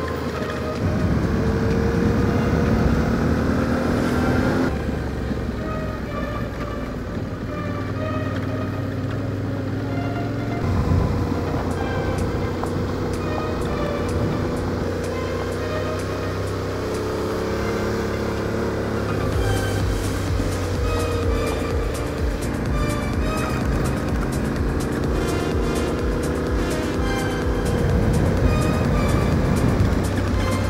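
Background music, with a quick steady beat coming in about two-thirds of the way through, laid over the running of a Yamaha Ténéré 700's parallel-twin engine and its tyres on gravel road.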